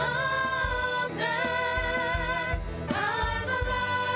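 Live church worship band performing a contemporary worship song: several singers in harmony on long held notes, backed by keyboards, bass guitar and drums.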